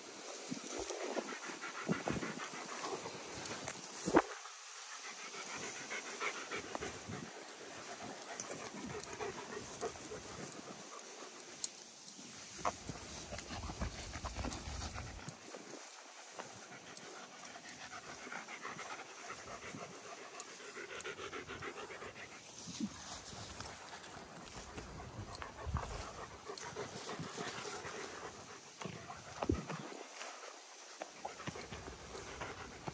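Dogs panting close by during a walk, a steady rhythmic huffing, with one sharp click about four seconds in.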